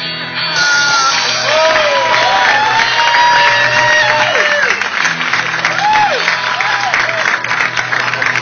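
Live band music with electric guitar and held, sliding notes.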